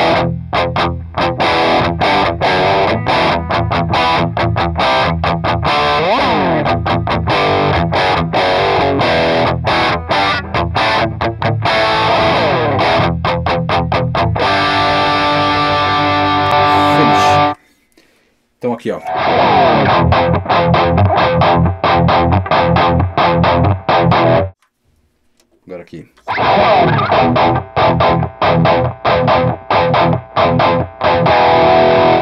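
Ibanez electric guitar played with heavy distortion, a busy lead line with several falling slides. It stops for about a second a little past halfway, resumes, then stops again for a second or two before carrying on.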